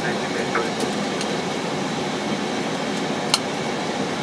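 Steady rushing noise inside the cockpit of an Airbus A320-family airliner on approach: airflow past the nose mixed with the hiss of the ventilation fans. One sharp click about three seconds in.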